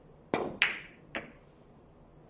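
Carom billiard shot: the cue tip clicks against the cue ball, the cue ball clacks loudly into a red object ball a moment later, then a third, fainter click follows about half a second after.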